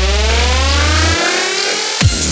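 Electronic synth riser in a dubstep/glitch-hop remix: a rich pitched tone glides steadily upward over a held sub-bass note. The bass cuts out a little past a second in, leaving the rising sweep alone as the build-up ahead of the drop.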